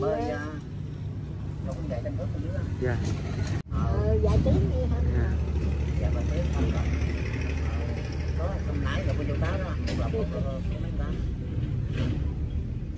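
A steady low engine drone, louder after a brief cut in the sound about a third of the way in, with quiet talking over it.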